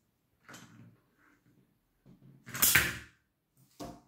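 A Bakugan toy ball rolled across a hard plastic battle arena: a faint rattle about half a second in, then a louder clatter of plastic lasting about half a second near the three-second mark, and a short click just before the end. The ball does not flip open.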